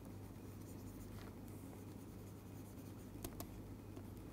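Faint scratching and light tapping of a stylus on a tablet screen as words are handwritten, over a low steady hum.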